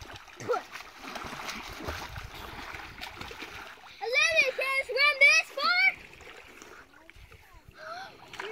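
Water splashing as children swim in shallow lake water. About four seconds in, a child's high voice calls out for about two seconds.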